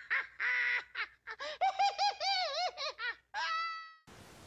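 Cartoon owl laughing hysterically: a run of choppy, wavering cackles rising and falling in pitch, ending in one drawn-out note that fades away.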